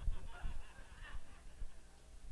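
Light, scattered laughter from a church congregation.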